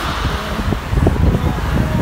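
Low rumbling noise in a parking garage, with a few soft knocks about a second in and near the end.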